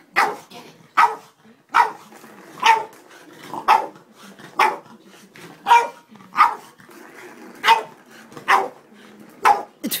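Boston terrier barking in short, sharp barks about once a second, excited play barks at a cat track ball toy whose ball he can't get out.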